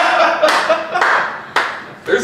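A man clapping his hands: a few slow claps about half a second apart, growing softer.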